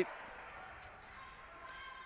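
Faint handball-court ambience in a sports hall: players' footsteps on the court with a few light ticks.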